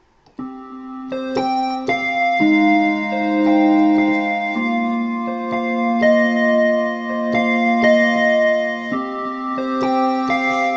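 Electronic keyboard set to a synth square-lead patch, playing a song verse: sustained left-hand chords moving through C minor, G sharp and A sharp under a repeated right-hand note figure. It starts about half a second in, and the chords change about two and a half, four and a half and nine seconds in.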